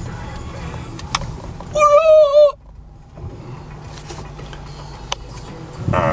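Van's engine idling, heard from inside the cabin as a low steady hum, with a couple of faint clicks. About two seconds in, a short high wavering note, the loudest sound here, cuts off abruptly.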